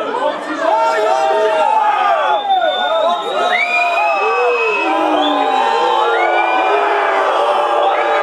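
A group of people cheering and shouting after a goal, many voices overlapping in yells and long held calls.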